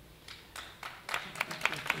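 Scattered audience clapping. A handful of separate claps begin about a second in and come closer together.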